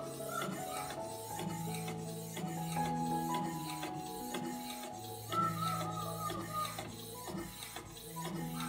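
Background instrumental music: held bass and mid notes changing every second or two over a steady ticking beat.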